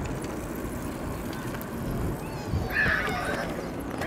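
Outdoor ambience with a steady low rumble and a short high-pitched call about three quarters of the way through.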